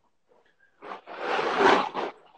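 Bag of ice rustling as it is handled: a single noisy burst about a second long that starts halfway through.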